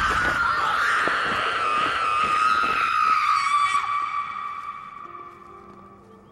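A woman's long scream, held on one pitch that sinks slightly, loud at first and then fading away over the last two seconds.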